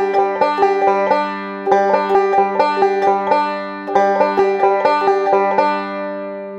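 Resonator banjo picked in a right-hand roll, played in three short runs with a pause between each, the strings ringing on through the gaps. The rolls are broken up by pauses, the sign that the player needs a slower tempo or more work on that roll.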